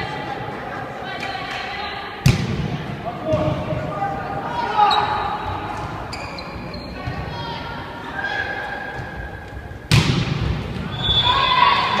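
A volleyball struck hard twice, a sharp slap about two seconds in and a louder one near the end, with voices calling out between them, all echoing in a sports hall.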